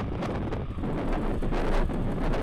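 Falcon 9 first stage's nine Merlin 1D rocket engines at full thrust during the climb after liftoff: a steady, noisy rumble with irregular crackle, heard over wind on the microphone.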